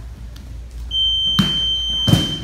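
Electronic round timer on the gym wall sounding one long, steady high-pitched beep that starts about a second in, marking the end of the sparring round. A thump of bodies on the mat comes under the beep.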